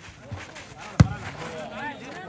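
A volleyball struck hard once by a player's hand, a single sharp slap about a second in, with faint voices around it.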